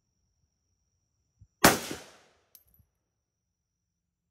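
A single rifle shot from a Hungarian AK-63DS (7.62×39mm), with a short echo trailing off over about half a second. A faint sharp click follows about a second later.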